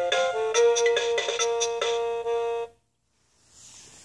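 Battery-powered toy music player's small speaker playing a simple electronic tune, one clean note after another, which cuts off suddenly about two and a half seconds in.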